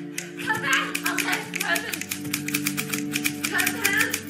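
Manual typewriter keys clacking in quick runs of sharp strikes over steady background music.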